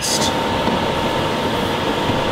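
Steady hissing sizzle from a saucepan of boiled-down Coca-Cola as the last of the syrup cooks off and the sugar scorches and smokes, with a faint steady hum underneath.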